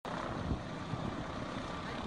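Steady rushing wind noise with uneven low buffeting on the microphone, starting abruptly.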